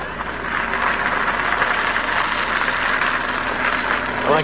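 A steady rushing noise, like a vehicle running.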